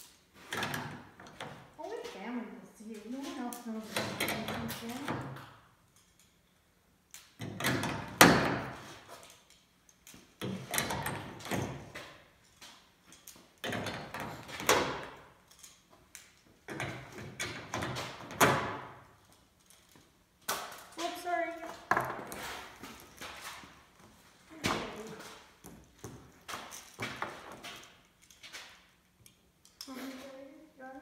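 Indistinct voices mixed with a series of knocks and clatters from handling work in a large workshop, coming in short bursts every couple of seconds; the loudest is a sharp bang about eight seconds in.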